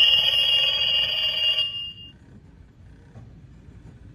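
Halloween rotary-telephone prop's small speaker playing a loud, high electronic ringing tone after its try-me button is pressed; the ring stops about two seconds in, before the prop's recorded greeting.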